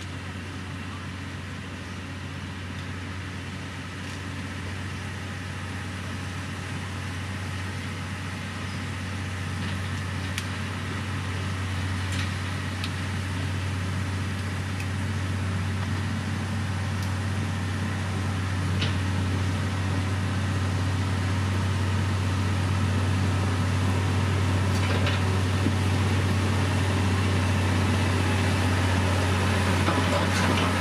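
LiuGong motor grader's diesel engine running steadily with a deep drone, growing gradually louder as the machine comes closer while its blade pushes gravel. A few faint clicks sound over it.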